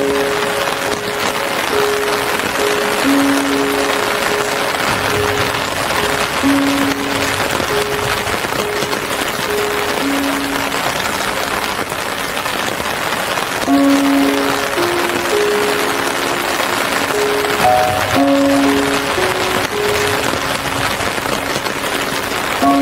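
Steady rain hiss under slow, soft instrumental music: a simple melody of long held notes, one at a time, low in pitch.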